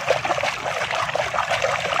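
A hand scrubbing a toy motorbike in foamy water: quick, irregular splashing and sloshing with small crackles.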